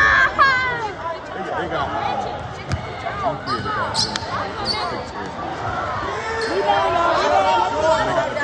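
A basketball bouncing on a gym floor during a game, mixed with indistinct players' and spectators' voices echoing in a large hall, with a few sharp knocks.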